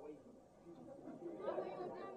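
Faint chatter of several voices talking off-microphone in the room, growing louder about one and a half seconds in.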